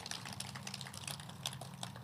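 A congregation applauding with sparse, quiet handclaps, scattered and uneven, over a steady low hum.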